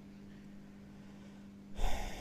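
A short, sharp breath blown onto a close microphone near the end, sudden and loud against a faint steady low hum.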